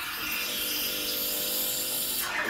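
Breville Creatista Pro's automatic steam wand starting to froth milk in its jug: a steady hiss with a steady hum under it.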